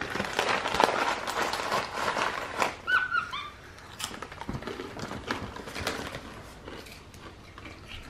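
Crisp crunching and crackling of freeze-dried peach slices being chewed, busiest in the first few seconds, with a few short high chirps from a capuchin monkey about three seconds in.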